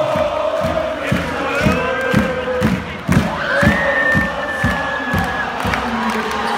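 Basketball arena crowd chanting and cheering over regular drum beats, about two a second. A long held high note sounds over the crowd about halfway through.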